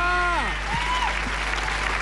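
Studio audience applauding, a steady clatter of clapping.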